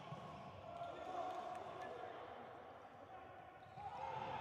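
Volleyball rally in an indoor sports hall: the ball struck a few times, with players' shoes and voices on the court over a steady hall murmur.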